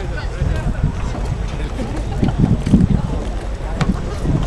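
Outdoor wind noise buffeting the microphone in an uneven low rumble, with indistinct voices of people around and a single sharp click near the end.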